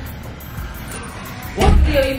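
Background music, with a loud, low thump about one and a half seconds in as the front door is shut.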